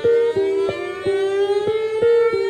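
Pre-recorded cello sounds cut up and resequenced by the Dicy2 machine-learning improviser: short notes, about three a second, alternating between two neighbouring pitches, with a higher tone gliding slowly upward over them.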